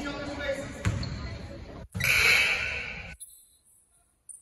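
A basketball dribbled on a hardwood gym floor, the bounces ringing in the hall over people's voices. About two seconds in, a louder burst of noise, and about three seconds in the sound cuts off abruptly.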